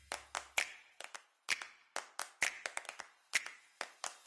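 A run of short, sharp clicks at an uneven pace, about four a second. A low music bed fades out in the first half second.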